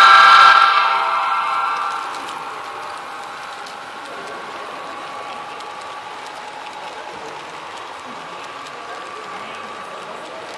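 Sound-equipped HO-scale model diesel locomotive blowing its multi-chime horn, loudest in the first second and fading out about two seconds in. A steadier, quieter hum with faint lingering tones follows, along with light clicking of the train on the track.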